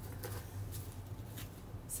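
A deck of oracle cards being shuffled and handled: a few soft, scattered flicks and rustles of card stock.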